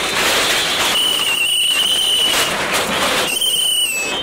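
Backhoe loader's bucket tearing into a small shop's corrugated sheet-metal shutter and roof: a burst of crashing, clattering metal, then high, steady screeching of metal, once for over a second and again more briefly near the end.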